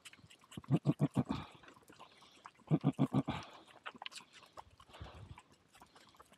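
Valais Blacknose sheep giving low, rapidly pulsed calls in two short bursts, about eight pulses a second, around one and three seconds in.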